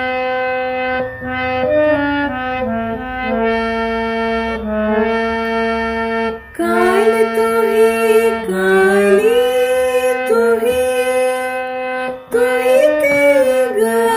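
Harmonium playing a shabad melody in held reed notes over a steady low drone. About halfway through, a voice joins, singing the melody along with it, with short breaks for breath.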